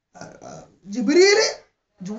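A person's voice in short spoken utterances, the loudest a drawn-out syllable rising in pitch about a second in.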